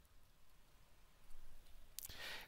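Near silence: only a faint low rumble, slightly louder near the end.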